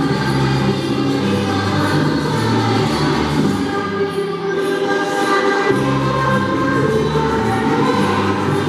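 A choir of primary-school children singing a Spanish Christmas carol (villancico) together.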